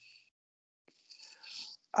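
Mostly quiet, with a faint click just before one second in, then a soft breathy, whisper-like voice sound lasting most of a second.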